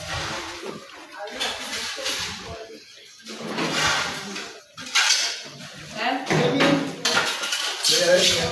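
Indistinct voices in the background, mixed with intermittent clinking and clattering.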